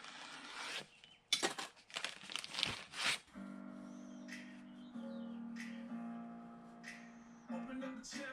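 Rustling and scraping handling noises for the first three seconds as a metal head gasket is positioned on the cylinder head, then soft background music of held chords that shift every second or so.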